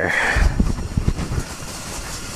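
Hands splashing and rubbing in icy water in an ice-fishing hole, with a few low knocks of handling.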